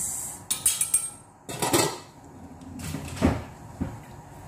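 Kitchen dishes and utensils being handled, making several separate knocks and clinks with short scraping noises in between.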